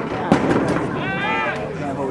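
A quick run of sharp cracks under half a second in, then a single loud yell of about half a second from a voice near the microphone.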